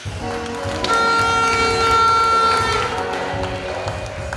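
Loud music on a sound system kicks in suddenly, with a steady bass beat and a long held high note lasting about two seconds in the middle.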